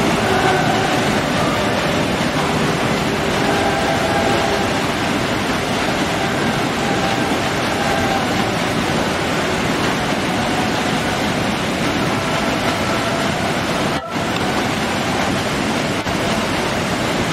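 Waterfall rushing steadily, a loud unbroken hiss of white water, with faint steady tones beneath it and a brief dip about fourteen seconds in.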